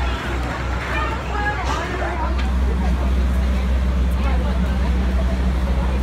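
Indistinct voices and background chatter over a steady low rumble that grows stronger about two and a half seconds in.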